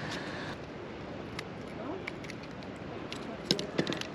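Steady outdoor background noise with a few light clicks and taps, the loudest a short cluster near the end.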